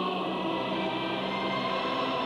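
Background music with a choir singing long held notes over an orchestra.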